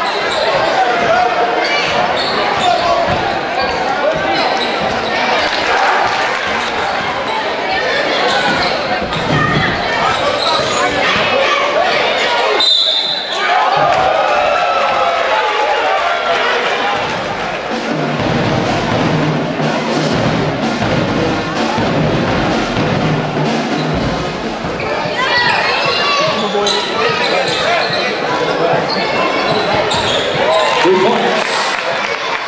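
Basketball game in a high school gym: crowd voices and a ball bouncing on the hardwood floor, with a short high whistle blast about 13 seconds in, the sign of a referee stopping play.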